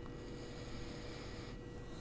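A person sniffing a wax melt held to the nose: a faint, long breath in through the nose lasting about a second and a half, with another starting near the end.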